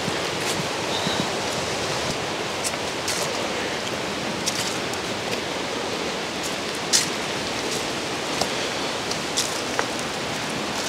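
Steady outdoor rushing noise, with a few light clicks and snaps scattered through it.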